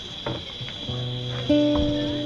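Acoustic guitars starting to play: a few scratchy string clicks, then chords ringing out from about a second in, with a louder chord struck about halfway.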